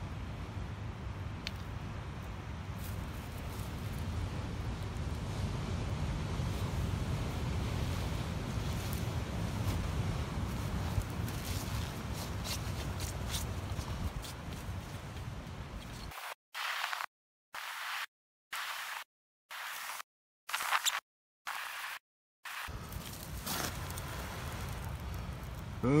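Breath blowing into a smouldering dry-grass tinder bundle to bring a bow-drill ember to flame, heard as a steady rushing noise. About two-thirds of the way in, the sound cuts in and out in about six short chunks with dead silence between, then the rushing returns.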